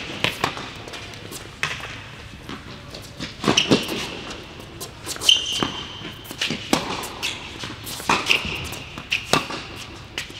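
Tennis rally on an indoor hard court: the ball is struck by racquets and bounces, giving sharp knocks about every second, with short high-pitched sneaker squeaks as the players move.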